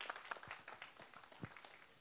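Faint, scattered hand clapping from a small group, a few claps at a time.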